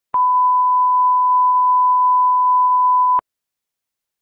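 A steady 1 kHz sine line-up tone, the reference tone that goes with colour bars, lasting about three seconds. It starts and stops abruptly with a click at each end.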